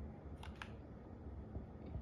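Two quick clicks about half a second in from a key on a keyboard's numeric keypad, pressed to move the mouse pointer with Mouse Keys, over a faint low hum.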